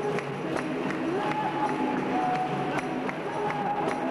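Capoeira roda: a circle of people clapping hands in a steady beat, about two and a half claps a second, under voices singing a held, drawn-out melody.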